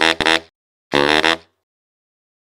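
Baritone saxophone sample playing two short funk stabs about a second apart, each a quick run of clipped notes.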